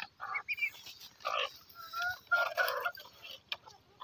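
Poultry calling: a handful of short, separate calls, one with a clear pitch about two seconds in.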